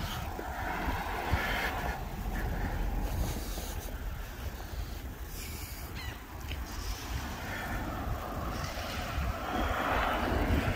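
Wind buffeting a handheld phone's microphone: an uneven low rumble over a faint, steady outdoor hiss.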